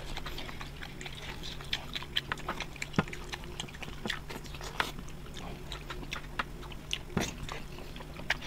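Two people eating grilled chicken with their hands: irregular wet chewing and smacking clicks, many a second, over a faint steady low hum.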